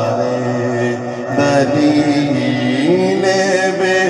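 A man singing an Urdu devotional song into a microphone, drawing out long held notes that step up in pitch near the end.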